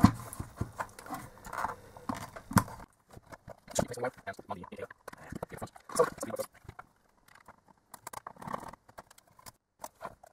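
Irregular knocks, taps and clicks of a plastic spotlight housing and a plastic enclosure box being handled and set down on a workbench, busier in the first few seconds and sparser later.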